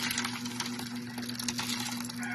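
Sardine and odong noodle soup poured from a pot into a plastic container: continuous splashing with many small crackles. A steady low hum runs underneath.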